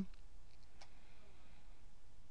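Low steady hiss of room tone with a single faint click a little under a second in.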